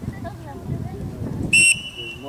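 Referee's whistle blown once, a short shrill blast about one and a half seconds in, over the voices of players and spectators.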